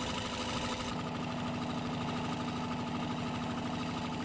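A small engine running steadily at an even pace, with a constant hum.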